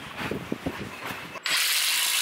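A wrench clicking on exhaust bolts under a Jeep, a few irregular short clicks. About one and a half seconds in, a loud steady hiss starts suddenly and drowns it out.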